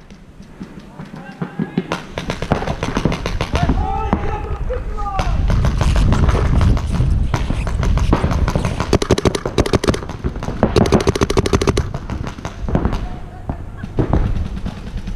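Paintball markers firing in fast strings of sharp pops, the firing heaviest in the second half.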